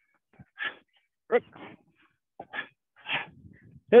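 A man calling out Japanese kata counts, "roku" about a second in and "shichi" near the end, with several short hissing bursts between the calls.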